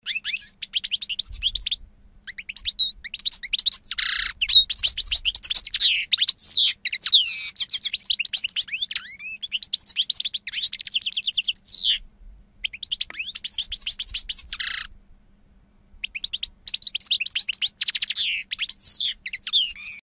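A canary singing: long phrases of fast, high trills and chirps, with short pauses about two seconds in, around twelve seconds and around fifteen seconds.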